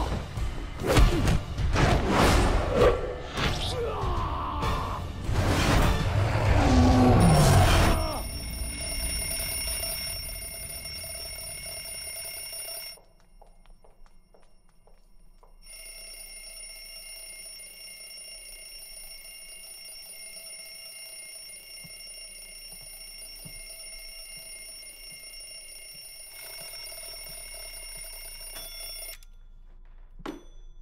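Loud fight-scene sound effects with film score for the first eight seconds, with punches and crashes among the music. A steady, unchanging alarm ringing follows; it drops away for a couple of seconds in the middle, resumes, and stops shortly before the end.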